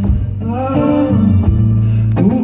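Live song: a man singing over a strummed acoustic guitar, with a steady low bass note underneath.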